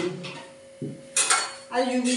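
A dull knock as a wooden rolling pin is set down on the board, then a brief metallic clatter of a spatula against the tawa (flat griddle) on the stove, a little after a second in.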